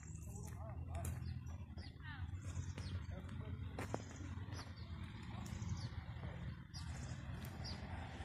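Birds chirping over and over in short, quick, falling calls, above a steady low rumble.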